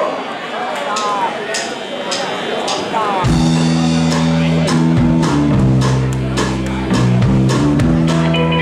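A live rockabilly band kicks into a song about three seconds in: electric bass guitar, electric guitar and drum kit playing together, with steady bass notes and regular drum strokes.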